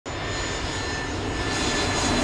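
Airplane flying low overhead: steady engine noise with a high whine, slowly growing louder.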